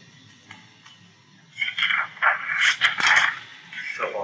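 A loud scraping noise lasting about two seconds, starting a little before halfway through, with a few sharp clicks in it, over a steady low hum from the recording.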